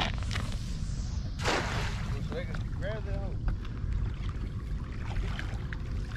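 A cast net thrown over water: a quick swish as it leaves the hands, then a rushing splash as it lands about a second and a half in. Wind rumbles on the microphone throughout.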